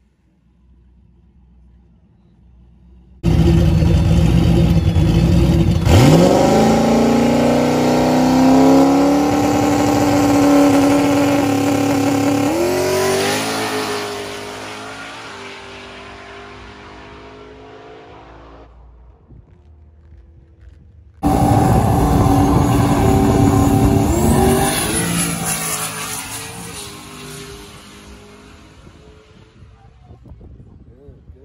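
Turbocharged 4.6-litre two-valve V8 of a New Edge Mustang GT making a drag-strip pass. It holds a steady rumble on the line, launches about six seconds in with a sharply rising pitch, shifts gear and fades as the car runs away. The sound cuts off, then the run is heard again in a second take that starts abruptly mid-pull, goes through one shift and fades.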